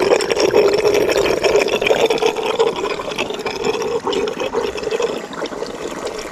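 Spring water seeping out from under rocks, trickling and gurgling steadily over and between the stones of a small rocky stream.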